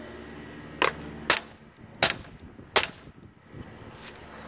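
Four sharp knocks or clicks, spaced roughly half a second to three quarters of a second apart, the second a little after a second in.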